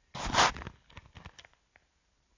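A sudden, loud burst of static-like noise lasting about half a second, followed by a few faint, scattered clicks.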